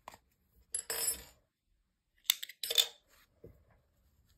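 Small metal tools handled and set down on a wooden tabletop while fastening off yarn: a soft rustle about a second in, then two sharp light clinks a little under half a second apart, from a metal crochet hook and yarn snips.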